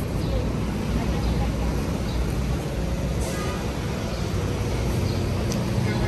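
City street ambience: road traffic running as a steady low rumble, with indistinct voices.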